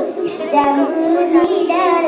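A young girl singing into a handheld microphone, holding each note for about half a second in a flowing melody. A couple of short clicks come about half a second and a second and a half in.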